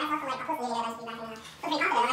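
A person's voice making a drawn-out wordless vocal sound that slides down in pitch, with another burst of vocalizing starting near the end.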